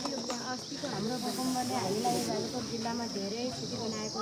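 A woman speaking in Nepali, her voice rising and falling, over a steady high-pitched hiss.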